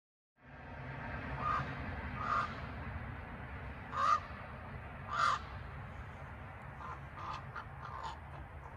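A crow cawing: four loud single caws spaced about a second apart, then several fainter, shorter calls near the end, over a steady low background rumble.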